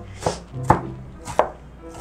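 Large kitchen knife chopping a red onion on a wooden cutting board: three sharp knocks of the blade striking the board, unevenly spaced.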